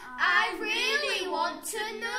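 Young boys' voices singing a drawn-out, gliding refrain together, part of a chanted performance poem.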